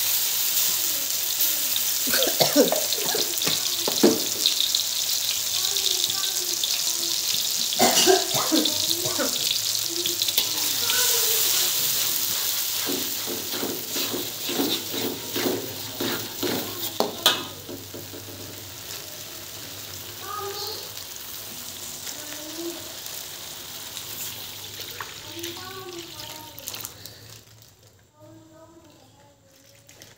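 Ground spice paste sizzling in hot oil in an aluminium wok, with the clicks and scrapes of a fork stirring it against the metal. The sizzle is loud at first, then dies down through the second half and mostly stops near the end.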